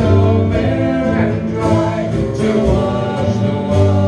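Live small band playing: upright double bass, acoustic guitar and drum kit, with a steady beat and a strong bass line.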